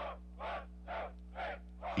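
A series of short, evenly spaced calls, about two a second, over a steady low hum.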